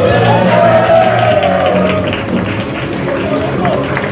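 Background music with a steady low line under a voice that swells up and falls away in one long drawn-out note over the first two seconds, with crowd noise faintly underneath.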